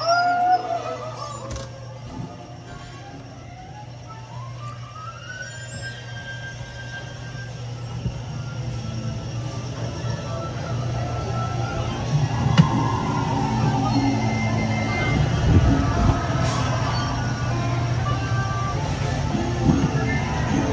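Music playing over the steady low hum of a dark-ride vehicle rolling along its outdoor track. A couple of rising whistle-like tones sound in the first few seconds, and the busy noise of a theme-park crowd grows louder in the second half.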